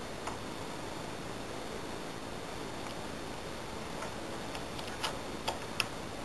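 Small metallic clicks of a lock pick and tension tool working the pin stack of a TESA T60 euro-profile pin-tumbler cylinder. There is a single click just after the start, a few faint ones later, then three sharper clicks close together in the last second, over a steady hiss.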